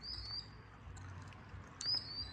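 A small bird calling twice: a short, high, thin whistled note at the start and again near the end, over faint steady background noise.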